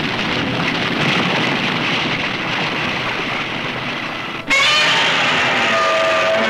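Monster-movie trailer soundtrack: loud music mixed with a dense, noisy wash of sound effects that cuts off abruptly about four and a half seconds in, giving way to a brighter passage of wavering high tones and held notes.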